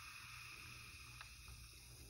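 Near silence: room tone, with two faint ticks about a second in.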